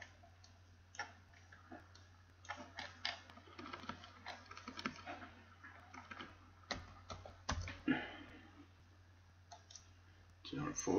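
Irregular clicks of a computer mouse and keyboard, over a low steady hum.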